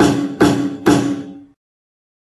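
Electronic snare drum voice from a Creative Labs keyboard's built-in drum sounds, struck three times about half a second apart, each hit ringing with a short tone before it dies away.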